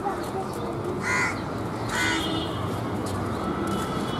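A crow cawing twice, about a second apart, each call short and harsh, over steady low background noise.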